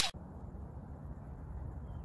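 The tail of an intro whoosh cuts off at the very start, giving way to steady, faint outdoor background noise picked up by a phone-style microphone: a low rumble such as light wind, with no distinct event.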